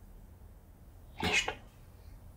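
A short, breathy non-speech sound from a person, lasting about a third of a second and coming a little over a second in, over a faint low room hum.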